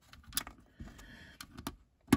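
Small plastic LEGO pieces being handled and pressed onto studs: a few sharp plastic clicks as grey jumper plates are fitted onto the model, with faint rustling of fingers between them.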